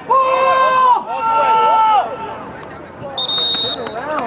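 Two drawn-out shouts, each about a second long, then a referee's whistle blown once, short and shrill, near the end, stopping the play.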